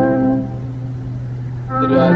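Recorded hymn accompaniment: a sustained chord thins to a single held low note about half a second in, then a fuller chord comes in near the end as the next sung phrase begins.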